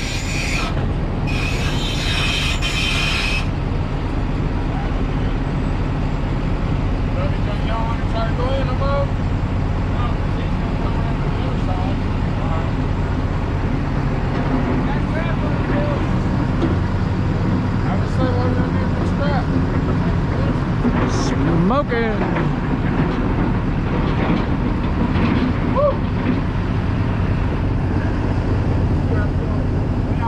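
A harsh metal-on-metal screech, "like nails on a chalkboard", in two bursts in the first few seconds as the forklift works at the lumber-laden flatbed trailer, over a large forklift's engine running steadily.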